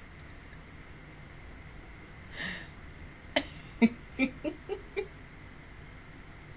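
A woman laughing softly: a breath pushed out about two and a half seconds in, then a quick run of about six short laughs a little past the middle.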